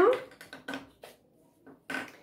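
A few faint, short clicks of wooden clothespins being handled, taken off a foam disc and picked up from a table, between a woman's words.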